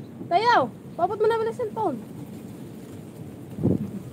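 A goat bleating twice: a short call that rises and falls, then a longer call held at one pitch with a wavering quiver. A brief low thud follows near the end.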